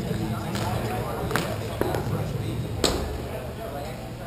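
Four sharp knocks of hockey sticks and puck on a rink, the loudest about three seconds in, over a murmur of distant voices.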